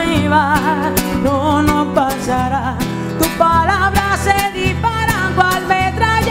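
A woman singing live, holding notes with vibrato, over her own strummed acoustic guitar.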